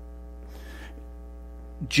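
Steady electrical mains hum in the recording's audio chain, with a faint brief hiss about half a second in.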